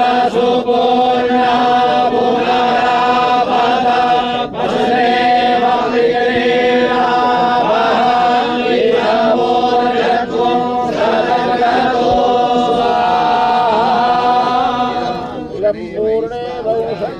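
A group of priests chanting Sanskrit mantras in unison on a nearly level pitch during a fire offering (havan), a continuous recitation that dips briefly about four seconds in and trails off near the end.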